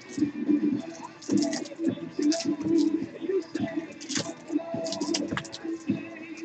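Trading cards being handled and sorted by hand, giving a run of short card clicks and slides, over background music.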